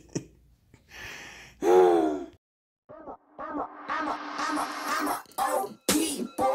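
A brief vocal sound about two seconds in, then hip-hop music with vocals starts about three seconds in.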